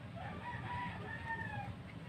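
A rooster crowing once: a drawn-out call of about a second and a half that moves through a few pitch steps and falls away at the end.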